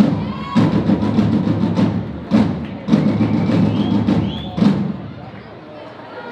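Drums beating a fast, loud rhythm of rapid strokes over a low booming resonance, with two short breaks. The drumming dies away about five seconds in.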